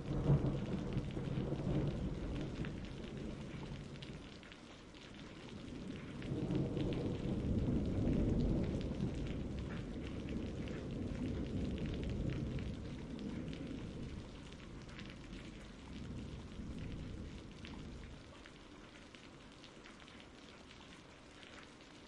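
Rain falling with rolling thunder: a low rumble swells at the start and a longer one builds a few seconds later, then the storm fades away toward the end.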